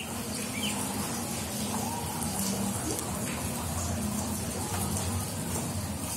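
Outdoor ambience: a steady, even hiss of background noise with a few faint bird chirps, mostly in the first second.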